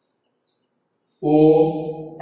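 Near silence, then about a second in a man's voice calls out a long, drawn-out "O" held on a steady pitch.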